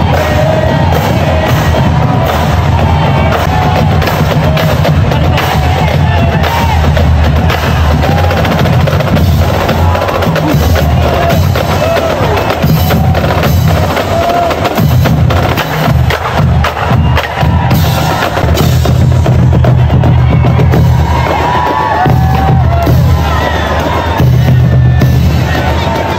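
Loud music driven by heavy drumming and percussion, with crowd voices underneath.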